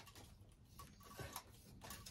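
Near silence with a few faint ticks and light rustles: a thin racket string being fed by hand through the frame's grommets.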